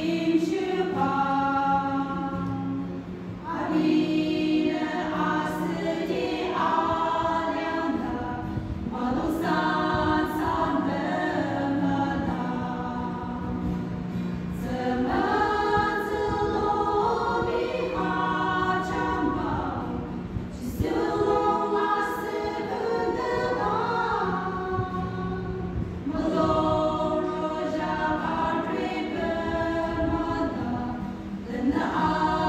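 A group of women singing a hymn together in a church, in phrases of a few seconds with short breaths between them.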